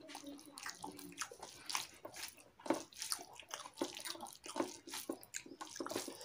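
Fingers mixing and squeezing rice with curry gravy on a metal plate: a steady run of short, irregular wet squelches and clicks.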